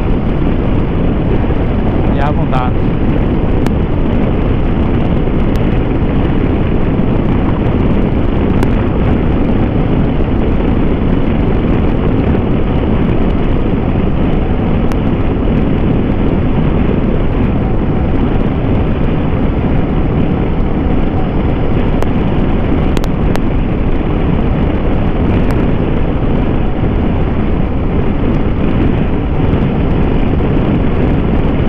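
Kawasaki Versys 650 parallel-twin engine running steadily at highway cruising speed, about 100 km/h, heard with heavy wind noise on the rider's camera microphone.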